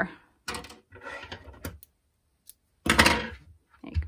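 Hands working a knitted yarn cup cozy: rustling as the yarn tail is tugged through the knit stitches, then a louder, short brush-and-knock about three seconds in as the cozy is laid and pressed flat on a wooden table.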